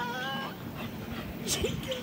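A dog whining: a short, high, steady whine just after the start and a fainter short one near the end.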